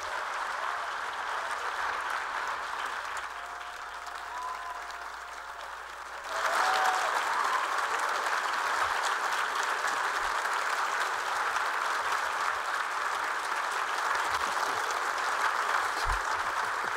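Large audience applauding at the end of a speech, the clapping swelling suddenly louder about six seconds in and staying at that level.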